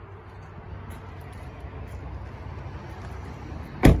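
Steady low rumble, then a single loud thud near the end: the 2013 Honda Pilot's side door being shut.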